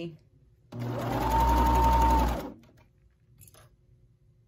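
Juki MO-1000 serger stitching a short stretch of seam in stretch fabric: the motor whine rises to speed just under a second in, runs steady for about a second and a half, then winds down and stops.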